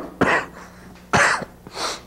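A man coughing repeatedly into a tissue, in short separate coughs: the persistent cough of active tuberculosis.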